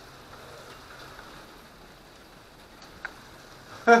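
Rain falling on a greenhouse roof, heard from inside as a faint, steady hiss, with one small click about three seconds in.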